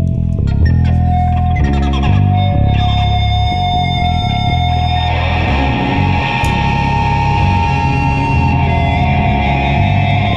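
Rock music led by electric guitar with bass underneath: a riff of changing low notes under a long held high note, growing fuller about five seconds in.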